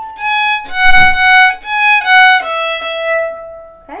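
Violin playing a short phrase of about six bowed notes that steps down in pitch with one turn back up, ending on a longer held note that fades out.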